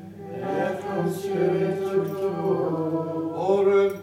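Unaccompanied Gregorian plainchant of the Latin Mass: voices singing long held notes that glide slowly up and down.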